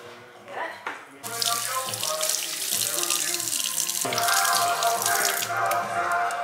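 Water running from a kitchen faucet into a stainless steel sink as hands rinse a spoon, starting about a second in, with background music over it.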